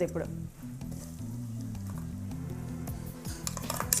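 Ground masala paste sizzling as it is spooned into hot oil in a pot, with a steel spoon scraping and tapping against a steel bowl a few times near the end. Soft background music runs underneath.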